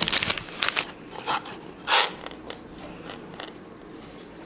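Cardboard cake box and its packaging being handled on a table: several short rustles in the first second, another about two seconds in, then only faint handling noise.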